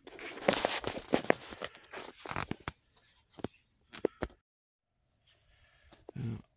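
Fabric rustling and handling noise with sharp clicks and taps, dense for the first couple of seconds and then sparser, dropping out to silence for about a second near the end.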